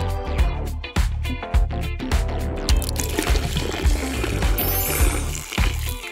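Orange juice poured from a jar into a popsicle mould, a trickle of liquid under background music with a steady beat.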